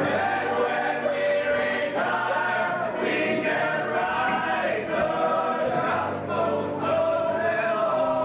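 Male ensemble of a stage musical's cast singing together in chorus, holding long notes.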